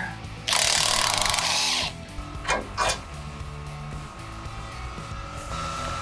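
Cordless impact wrench hammering for about a second and a half as it breaks loose and spins out a radius rod bolt, followed by two short knocks. Background music plays underneath.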